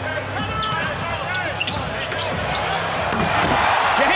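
Basketball game court sound: a ball being dribbled and sneakers squeaking on the hardwood, over arena crowd noise that grows louder near the end.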